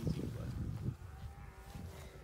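Wind rumbling on the microphone, strongest in the first second, with a faint long held tone in the second half.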